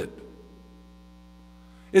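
Steady electrical mains hum, a set of fixed low tones, under a pause in speech; the last spoken word trails off in the first moment and a man's voice starts again right at the end.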